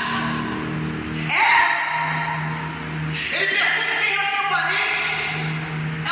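Electronic keyboard holding a sustained low note or chord as a church-service backing pad. A woman's loud voice comes in over it twice, through the PA in a large hall.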